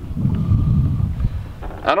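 A low rumble for about a second on the microphone, then a man starts to speak near the end.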